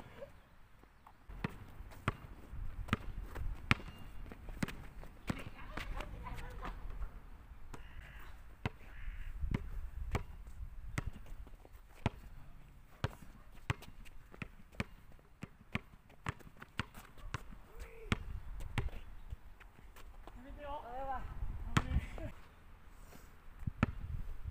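Basketball bouncing on an outdoor hard court during one-on-one play: sharp, irregular dribble thuds with sneaker steps, and a few short calls from the players.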